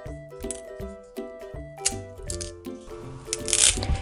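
Background music: a light melody of short, even notes. About three and a half seconds in comes a short crackle, a wooden popsicle stick being snapped by hand.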